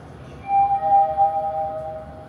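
Arrival chime of a Hyundai SSVF5 elevator as the car reaches its floor: two electronic tones, a higher one about half a second in and a lower one joining just after, overlapping and ringing for about a second and a half.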